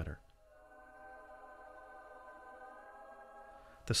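Faint background music: a sustained chord of steady held tones, like a synth pad, without a beat.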